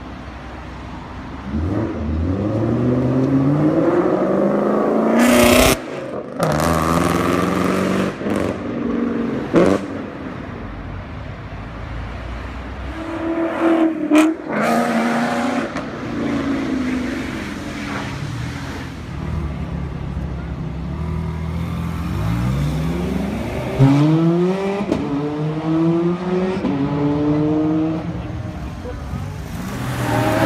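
Modified Ford Mustang Shelby GT500's supercharged V8 accelerating hard, its revs climbing again and again with abrupt breaks between the climbs.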